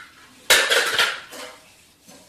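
A small toy car banged down onto a hardwood floor about half a second in, clattering in a quick run of sharp hits, with a lighter knock shortly after.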